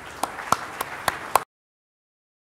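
Audience applause, a steady patter of clapping with a few sharp individual claps standing out, cut off abruptly about a second and a half in.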